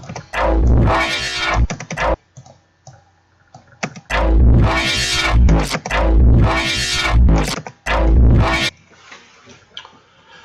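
Distorted synth bass notes from the Harmor synthesizer in FL Studio with its Classic distortion on: a short pair of notes, a pause of about two seconds, then a run of about five notes in quick succession. Each note has a weird, metallic tone.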